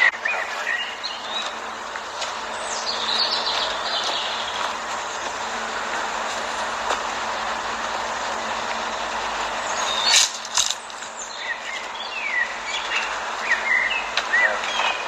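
Small birds chirping over a steady outdoor background hiss, with one sharp knock about ten seconds in.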